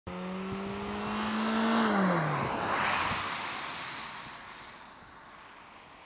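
A car passing by at speed: its engine note holds steady as it approaches, drops in pitch as it goes past about two seconds in, and its tyre and road noise then fades away into the distance.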